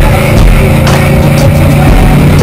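Loud rock music playing over the steady drone of a car driving at freeway speed.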